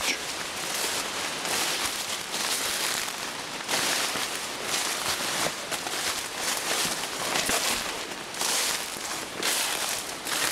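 Footsteps through tall grass and shrubs, with leaves and stems rustling and brushing in irregular swells.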